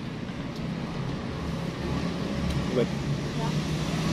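Steady low rumble of road traffic, growing a little louder about halfway through as a vehicle passes.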